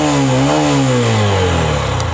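Exhaust note of a 2021 Honda SP 125's 124 cc single-cylinder engine, revved in neutral. The pitch rises, dips briefly, rises again about half a second in, then falls back toward idle.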